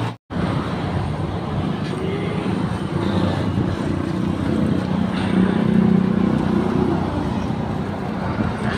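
Steady road traffic noise, with a hum that grows louder for a moment around the middle. The sound drops out completely for an instant at the very start.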